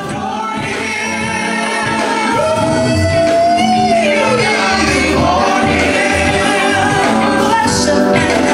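Gospel choir singing with instrumental accompaniment and a low bass line, fading in over the first two seconds. One voice holds a long note from about two and a half seconds in, then glides down just before four seconds.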